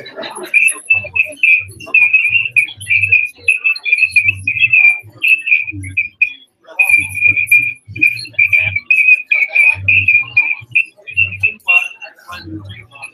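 Unintelligible, distorted speech with a shrill, squeaky ringing that pulses with the syllables.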